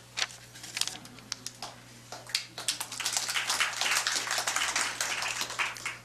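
Sheets of paper rustling and shuffling close to the microphone, scattered crisp clicks at first, then dense crackling from about two seconds in. A steady low hum lies underneath.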